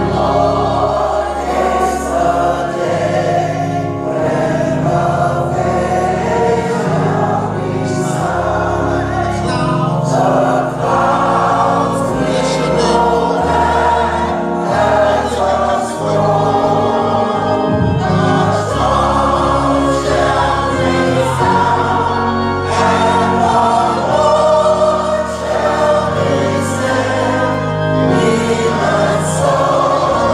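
Church choir singing a gospel song, accompanied by organ with held bass notes.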